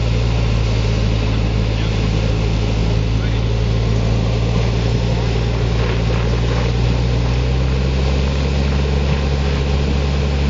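Hummer SUV's engine running steadily at low revs as it crawls slowly over a rocky dirt trail, its pitch shifting slightly near the end.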